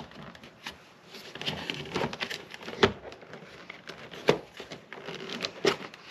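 A boat's bow cover plate, with a fish finder still mounted in it, being worked loose and slid out of its deck opening by hand: scattered knocks and clicks with scraping and rustling in between.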